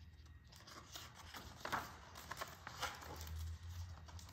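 Pages of a hardcover picture book being turned and a large fold-out page opened out: soft paper rustling and crinkling with a few light taps and scrapes.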